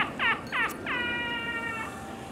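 High-pitched falsetto cackle from a costumed clown: a quick run of short falling 'hee' notes, then one long held high note that sinks slightly and stops just before the end.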